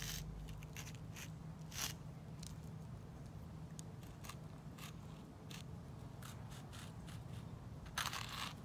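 Stick of sidewalk chalk scratching across concrete in short, irregular strokes.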